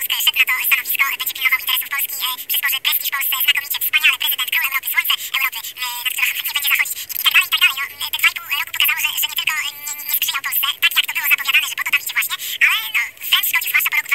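A high, thin, tinny-sounding voice talking almost without pause, with hardly any low tones, like speech heard down a telephone line.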